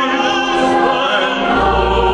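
Choir singing sustained notes with a chamber string orchestra in a live performance of a sacred oratorio. A deep low note comes in under them about one and a half seconds in.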